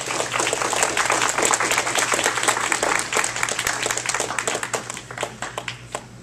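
Audience applause: many hands clapping together, thinning to a few scattered claps near the end.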